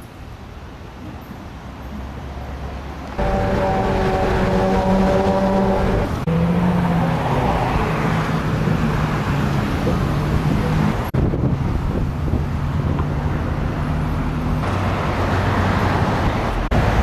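City street traffic: vehicle engines running with steady hum and road noise. The sound changes abruptly several times where separate clips are joined, the first and loudest jump about three seconds in.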